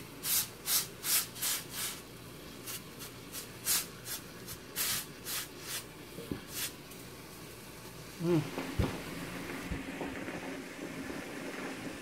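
Damp terry bath cloth rubbed in quick strokes, about two or three a second, over the soleplate of a Hamilton Beach steam iron, wiping off the brown mineral crud that vinegar descaling has flushed out of its steam vents. The strokes stop about seven seconds in.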